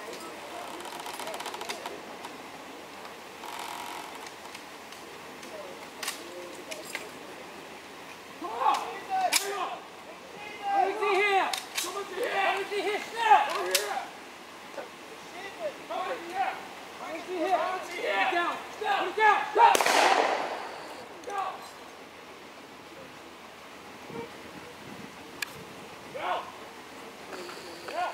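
A handful of scattered blank rifle shots from WW2 reenactors' rifles, the loudest about twenty seconds in. Voices call out between the shots.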